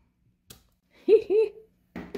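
A woman's short two-note vocal sound about a second in, the loudest thing heard, between faint taps of a clear acrylic stamp block on cardstock, with a sharp click at the end as the block comes off the card.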